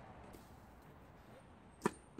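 A single sharp knock of a tennis ball near the end, over a low outdoor background.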